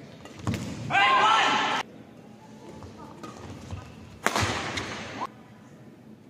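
Badminton rally sounds: a sharp racket-on-shuttlecock hit, then a player's loud shout about a second in. About four seconds in comes a sudden, louder hit or call that rings on in the hall's echo for most of a second.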